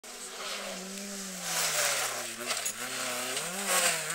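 A rally car's engine approaching at speed, its revs sinking over a couple of seconds and then climbing sharply again near the end as it gets louder.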